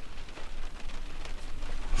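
Steady hiss with a low rumble: background noise inside a car cabin.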